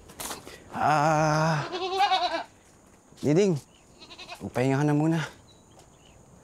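Domestic goat bleating several times: a long quavering bleat about a second in, then shorter bleats.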